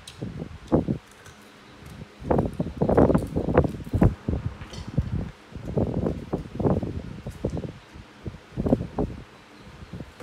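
A grass broom brushing and scraping over a concrete floor in a series of irregular strokes, busiest in the middle of the stretch.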